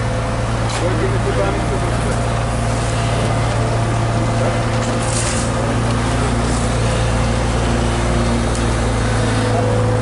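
HAMM tandem road roller's diesel engine running with a steady low drone, with a few brief scrapes of rakes dragged over fresh asphalt, the clearest about halfway through.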